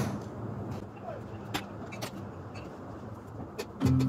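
Plastic LEGO bricks clicking and tapping as they are handled, a few scattered clicks over a steady low hum. Background music starts up near the end.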